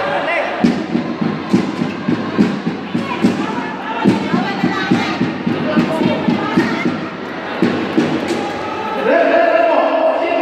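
Basketball bouncing on a wooden gym floor: a long run of quick, regular thuds that echo in a large hall and stop about eight seconds in. Voices are heard over the bouncing.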